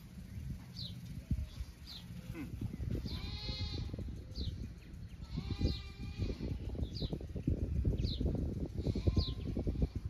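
Livestock bleating twice: two long, wavering calls about three and five and a half seconds in. A bird repeats a short falling chirp about once a second.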